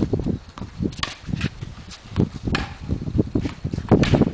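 Wooden paddles striking a paddle tennis ball and the ball bouncing on the hard court during a rally: a few sharp, hollow knocks spaced irregularly.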